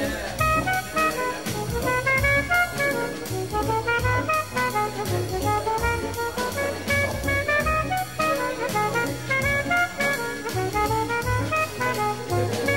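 Jazz music: a horn plays quick runs of notes rising and falling over drum kit and bass, with a steady beat.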